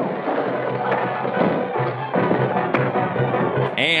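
Dramatic film-score music from a 1940s serial soundtrack, with a thin, muffled old-film sound, playing under a fistfight and broken by a few sharp knocks of blows.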